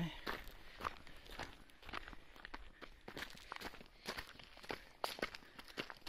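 Footsteps of a person walking at a steady pace on a dirt path strewn with dry leaves, about two steps a second.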